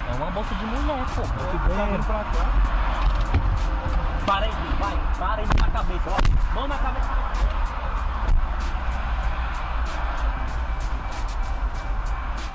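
Steady low road and engine rumble of a moving police car, with music and indistinct voices over it and two sharp knocks about six seconds in.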